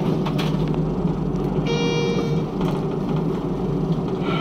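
Schindler 5400 elevator car's steady low ride rumble. About two seconds in, a single electronic floor-passing chime sounds for under a second.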